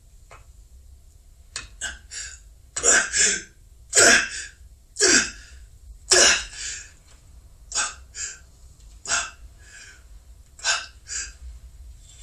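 A man breathing heavily in short gasping breaths, in and out in quick pairs about once a second, from a second or so in.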